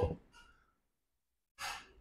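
Near silence between spoken phrases, broken near the end by a short, audible intake of breath before the speaker talks again.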